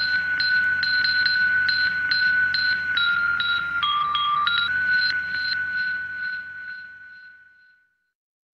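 Music outro: a high, sustained synthesizer tone pulsing a little over twice a second. Its pitch steps down twice in the middle, then returns and fades out near the end.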